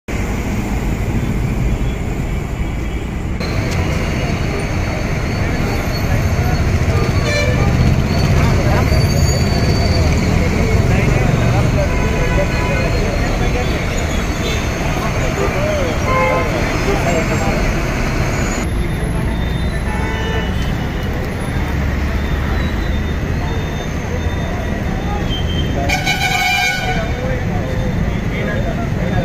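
Busy city street: traffic noise with vehicle horns honking over the voices of a crowd talking, with a horn sounding near the end.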